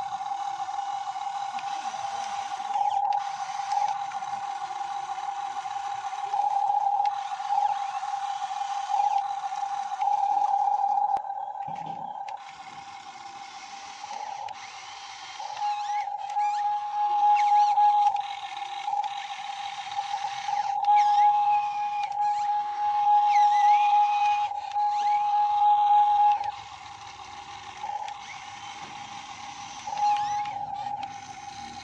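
Scale RC Hitachi ZX135US excavator model's drive whine, a steady high-pitched whine while the machine works. The whine swells louder in stretches as the arm and tracks move and drops back when it eases off, with a quieter spell near the end.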